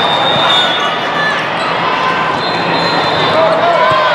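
Busy sports-hall din during volleyball play: many voices chattering and calling over the sound of balls being struck and bouncing, with short high squeaks.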